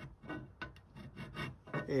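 About five short, dry scraping and rubbing strokes: a hand file handled against a metal negative carrier clamped in a saw vise.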